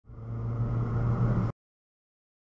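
A car engine running steadily. It fades in at the start, grows slightly louder, and cuts off abruptly after about a second and a half.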